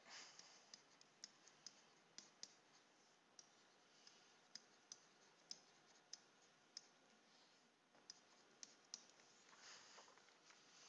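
Faint, irregular clicks, about fifteen of them, of a stylus tapping on a tablet while words are written by hand.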